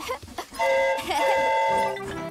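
Cartoon steam locomotive's whistle blown once: a steady chord of several notes, starting about half a second in and held for just over a second.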